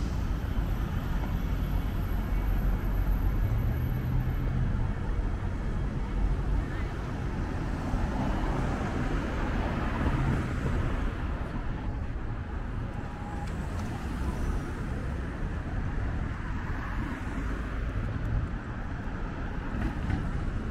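City street traffic: cars passing through an intersection, a steady mix of engine and tyre noise with swells as vehicles go by.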